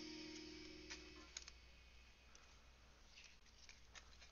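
Near silence: a faint held music chord fades out about a second in, then a few faint clicks of trading cards being handled.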